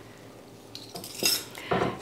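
Wire whisk scraping and clinking against an enamelware saucepan while stirring a butter-and-flour roux, a few short strokes after a quiet start, the loudest a little past the middle.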